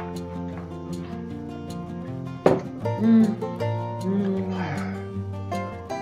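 Background music of plucked mandolin and acoustic guitar playing steadily. There is a sharp knock about two and a half seconds in, and short murmured voice sounds a little after.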